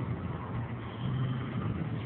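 Steady low rumble under an even noisy hiss, with no distinct events.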